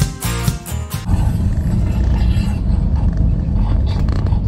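Intro music with strummed chords ends about a second in. It gives way to the steady low rumble of dense street traffic, with motorcycle and tricycle engines and cars.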